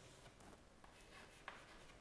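Very faint chalk writing on a chalkboard, with a few light taps of the chalk.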